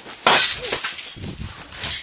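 A glass cup smashing with a sudden loud crash about a quarter of a second in, followed by a second or so of scattered clattering noise.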